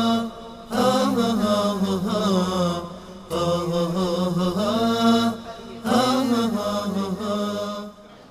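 A solo voice chanting in long, wavering held phrases of about two and a half seconds each, with short breaks for breath between them.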